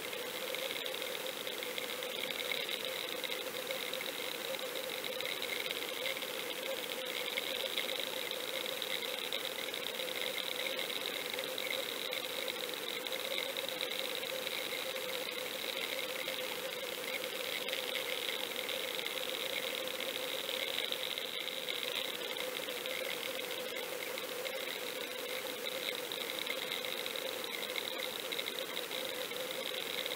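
Steady underwater rushing noise with a constant hum, picked up by a lure-mounted action camera as it is pulled through the water on a fishing line.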